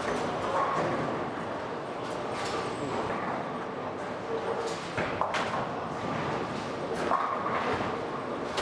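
Bowling alley din: balls rolling down the lanes and pins crashing, with several sharp knocks and a few short shouts.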